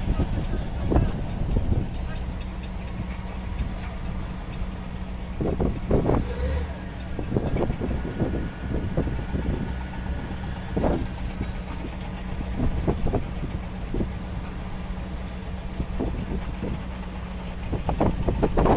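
Diesel engine of heavy earthmoving equipment running steadily at low speed, a continuous low drone.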